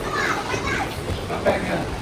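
Young children's voices chattering and calling out as they play, with indistinct talking throughout.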